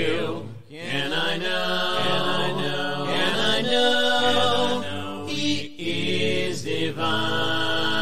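Unaccompanied voices singing a hymn in harmony, in long held chords with short breaks between phrases, about half a second in and again near six seconds.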